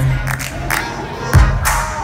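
Live pop song played loud through a festival sound system and heard from within the audience, a pause between sung lines filled by the backing track with heavy bass hits near the start and again about a second and a half in. Crowd noise is mixed in.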